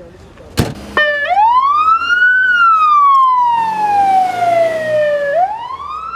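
Ambulance siren switched on and sounding a slow wail: the pitch climbs in about a second, falls slowly for some three seconds, then climbs again near the end. A single thump comes just before the siren starts.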